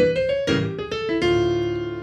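Piano playing a quick bebop line with both hands, then settling about a second in on a held D minor chord that rings and slowly fades.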